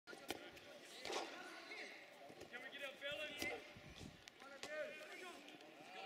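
Distant shouts and calls of players and spectators at an outdoor football match, with a few sharp thuds of the ball being kicked, the loudest near the start and about three and a half seconds in.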